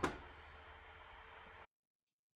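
Faint steady hiss of room tone through a computer's built-in microphone in a gap in the voiceover, cutting off abruptly to dead silence about a second and a half in.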